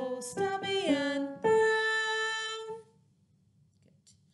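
A woman singing a short melodic line that zigzags between higher and lower notes and ends on a long held, higher note.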